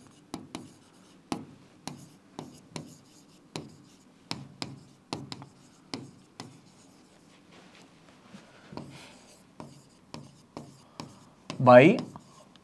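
Chalk writing on a blackboard: a string of sharp taps and short scrapes as letters are written, irregular, a few a second, with a brief pause about eight seconds in.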